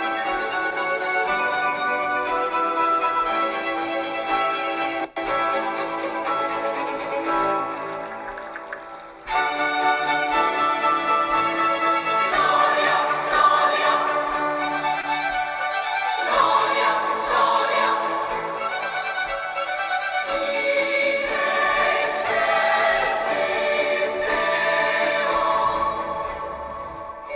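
Baroque sacred music: a string orchestra plays sustained chords, thins out and fades about eight seconds in, then starts again, and women's choir voices join about twelve seconds in, singing over the strings.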